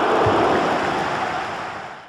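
Loud, steady rushing noise of an intro sound effect, fading out over the last half second.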